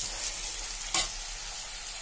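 Sliced onions and ginger-garlic paste sizzling in hot oil in a kadhai, with a spatula stirring them and one sharp scrape against the pan about a second in.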